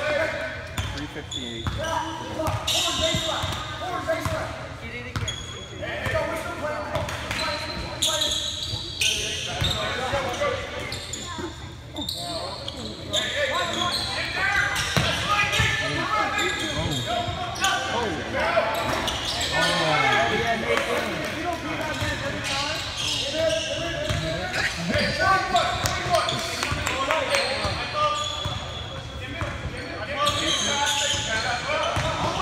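A basketball bouncing repeatedly on a hardwood gym court during play, mixed with the untranscribed voices of players and spectators in the gym.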